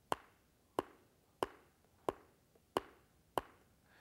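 A person's upper and lower teeth tapped together six times at an even pace, about one and a half sharp clicks a second, as in the qigong teeth-tapping exercise.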